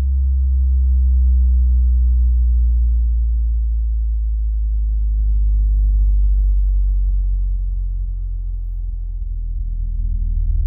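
A bass test tone slowly sweeping down from about 64 Hz to about 39 Hz, played through a JBL BassHub spare-tire subwoofer and heard inside the car's cabin, with a faint buzz of higher overtones over it. The sweep tests how low the sub reaches, and it still hits hard at the bottom of this range.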